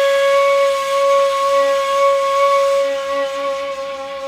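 A plastic Kiz ney in B playing one long breathy note, held steady as part of a Segah taksim improvisation. The note grows slightly softer near the end.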